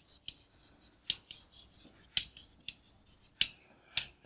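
Chalk writing on a blackboard: a string of irregular sharp taps and short scratchy strokes as the chalk meets the board.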